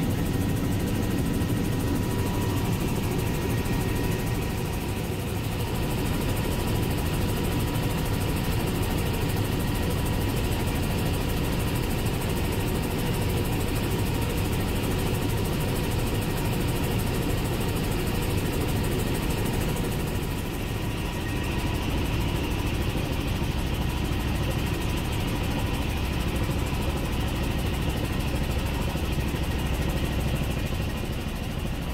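Helicopter in flight heard from inside the cabin: a steady rotor and turbine drone with a thin, steady whine over it.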